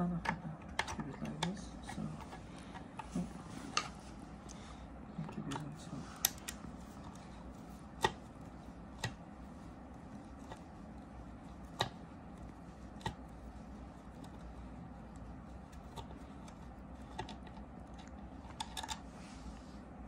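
Irregular light clicks and ticks of a screwdriver turning out the screws of a small portable air compressor's cylinder heads, metal on metal, with a few sharper clicks now and then.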